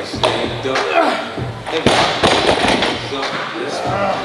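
Loaded barbell with rubber bumper plates (183 kg) thudding on the gym floor as sumo deadlift reps are set down, twice, over background music with vocals.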